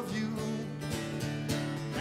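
Acoustic guitar strumming chords in a short instrumental gap of a live folk-pop song, a few strokes about half a second apart, with the singer's last sung word trailing off at the start.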